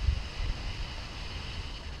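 Wind buffeting the phone's microphone: an irregular low rumble with a faint steady hiss above it.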